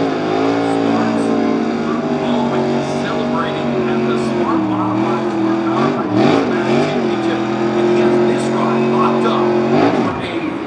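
Modified race car's V8 engine held at high revs during a burnout, the rear tires spinning and smoking. The revs dip and climb back a few times about halfway through, then hold steady again.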